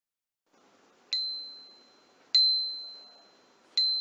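A bright, high-pitched bell-like ding struck three times, about a second and a quarter apart, each ringing on a single pitch and fading away. It is an intro sound effect.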